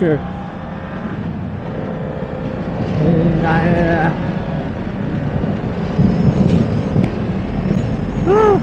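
BMW F900R's parallel-twin engine pulling under acceleration, shifting up twice from third to fifth gear. The engine sound grows louder about three seconds in and again near six seconds.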